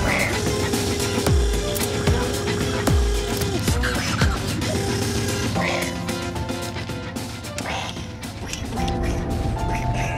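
Film score with sound design: dense, ratchet-like mechanical clicking over a held tone for the first few seconds, with three deep falling swoops in the first half, then several steady tones layered together.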